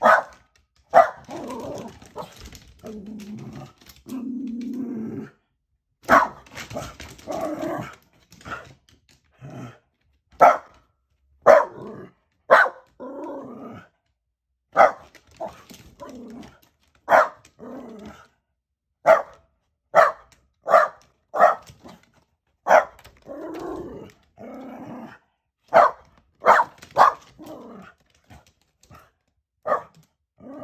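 A pet dog barking repeatedly at a tanuki outside the window: about twenty short, sharp barks, loosely spaced, with a few longer, lower sounds between them in the first few seconds.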